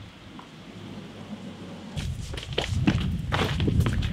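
Footsteps of someone walking, starting about two seconds in as irregular knocks over a low rumble.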